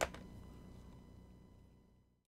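Faint room tone with a thin steady electrical whine, fading out to silence.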